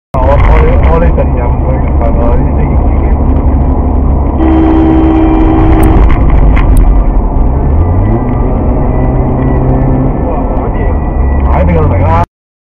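Low, steady engine and road rumble inside a moving car, the engine note rising about eight seconds in as the car speeds up. A horn sounds steadily for about a second and a half near the middle.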